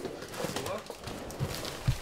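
Cardboard boxes being handled and set down, with scattered knocks and a couple of sharper thumps near the end, over background chatter.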